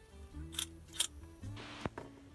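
A few faint, sharp clicks and a short soft rustle as a plastic Mini 4WD car with its rollers is handled in the hands.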